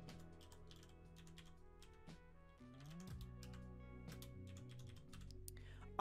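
Faint computer keyboard typing, a string of quick key clicks as a short phrase is typed, over soft background music.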